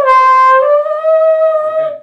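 Trombone playing a loud held high note that slurs down a little just as it starts, comes back up to the first note about half a second later, and holds it until it stops near the end. The slide stays put, so the change of note is a lip slur in the upper range.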